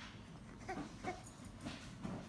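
A baby making about three short, faint whimpering vocal sounds as she creeps forward on her belly.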